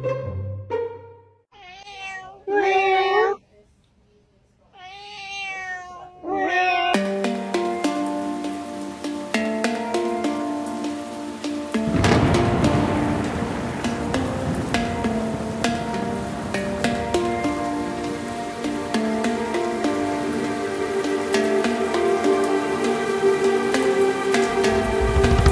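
A pet's high, wavering cries, heard twice in the first several seconds, followed by background music with sustained notes for the rest.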